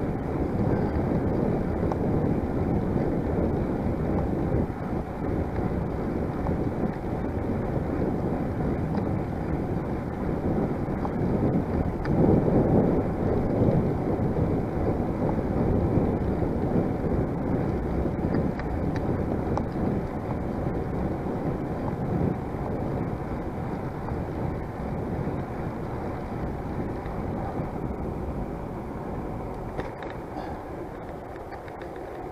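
Wind rushing over the microphone of a camera on a moving bicycle: a steady, dull rumbling noise that swells louder about twelve seconds in, then eases.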